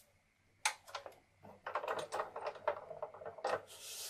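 A single click about half a second in, then a quick run of light clicks and clatter lasting about two seconds, from card pieces and a paper cutter being handled on a wooden desk.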